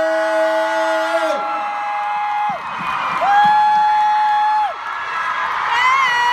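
A man's voice through a PA stretching out a ringside-style introduction in long held, sung-out notes of about a second and a half each, while the crowd cheers and whoops.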